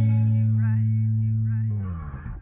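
Closing chord of a bachata remix ringing out after the drums stop: a held bass note and chord with a few short wavering higher notes above, fading out near the end.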